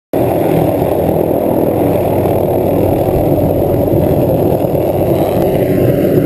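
MD 500-series light turbine helicopter lifting off right beside the microphone, giving a loud, steady heavy rumble of rotor and engine with no clear breaks.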